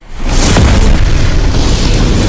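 A loud explosion sound effect: a boom that swells in within the first half-second and goes on as a sustained rumbling roar.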